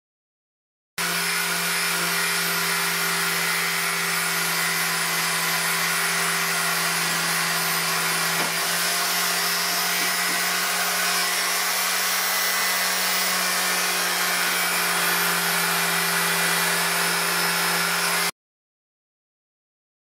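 Small corded electric cutter running steadily against a leather hide, giving a constant motor hum with a hiss over it. It starts abruptly about a second in and cuts off abruptly near the end.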